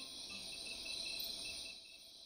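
Crickets chirping in a night-time ambience: a faint, even series of short high chirps, several a second.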